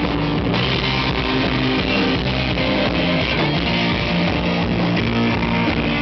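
Punk rock band playing live: electric guitars, bass and drums.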